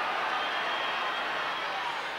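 Steady background noise of the stadium crowd at a rugby league match, an even din with no distinct cheers. A faint high steady tone runs under it.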